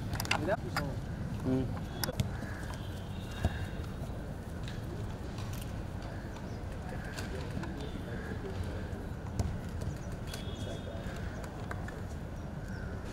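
Outdoor ambience of a children's football game on grass: scattered voices and shouts over a steady low rumble, a few sharp knocks of the ball being kicked, the loudest about three and a half seconds in, and birds calling.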